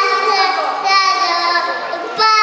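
Young children singing, their high voices holding and bending notes.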